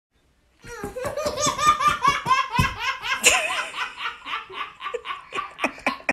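A baby laughing: a long run of quick, high-pitched bursts of laughter starting about half a second in, coming a little slower toward the end.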